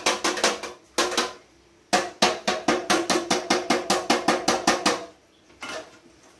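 A metal box grater worked in quick rasping strokes, with a metallic ring under them. There are short runs at the start and about a second in, then a steady run of about five strokes a second from about two seconds to five, and one brief burst near the end.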